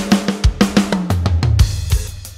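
Sampled acoustic drum kit from the Hertz Drums virtual-drum plugin playing a groove: kick, snare and cymbals, with the kick at varying velocities, from soft ghost notes to hard hits.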